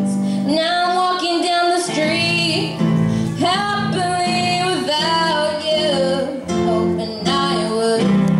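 A girl singing lead vocals through a microphone, backed by a live band with electric bass guitar holding low notes beneath her voice.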